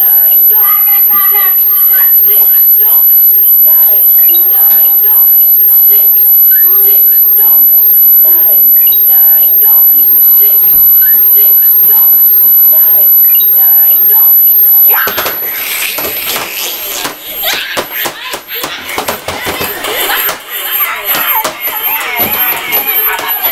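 Children's electronic learning board playing its music game: a melody of electronic notes with short voice prompts. About fifteen seconds in it gives way to a jumble of knocks and noise.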